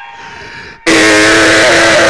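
A quiet lull with faint lingering tones, then a little under a second in a loud held note cuts in suddenly over the sound system and stays at one steady pitch.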